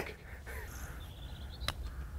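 A single sharp click of a putter striking a golf ball near the end, over faint birdsong and a low outdoor rumble.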